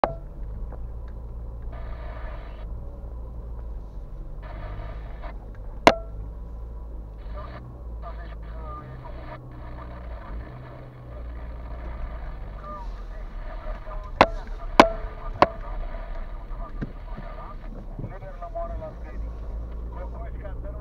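Car driving slowly over a rough gravel road, heard from inside the cabin as a steady low rumble. Four sharp knocks stand out, one about six seconds in and three in quick succession around fourteen to fifteen seconds.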